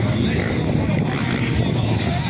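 Motocross dirt bike engines running on the track, a steady noisy drone with most of its weight low down.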